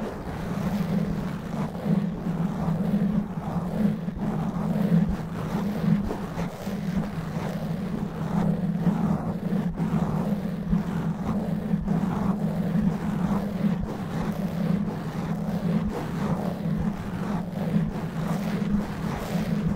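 Long natural fingernails scratching fast and roughly on a foam microphone windscreen, right on the mic: a dense, continuous scratching with a steady low rumble underneath.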